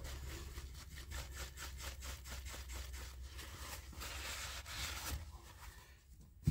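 Shop rag rubbing polishing compound off a steel crankshaft journal in quick back-and-forth strokes, about four a second, fading out near the end.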